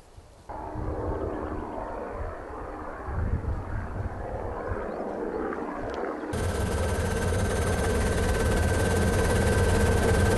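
Light helicopter in flight, its rotor beating over the steady engine noise. About six seconds in, the sound cuts to the louder noise inside the helicopter's cabin, with a steady high whine over the rotor beat.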